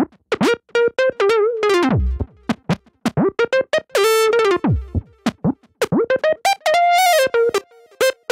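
Nord Lead 4 virtual analog synthesizer playing a run of short, punchy bass and lead notes through its 'Ladder M' transistor ladder filter emulation. Some notes slide sharply down in pitch, and the tone changes as the filter knobs are turned by hand.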